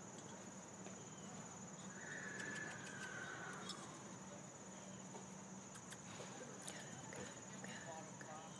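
Faint outdoor ambience dominated by a steady high-pitched drone of insects, with a faint falling tone about two seconds in and a few soft clicks near the end.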